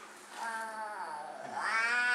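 A young child's long wordless, whining vocal sound, its pitch falling and then rising again and growing louder toward the end.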